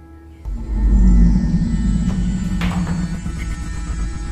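Suspense film score: a sudden deep boom about half a second in, then a low held drone that slowly fades, with a brief hissing swell near the three-second mark.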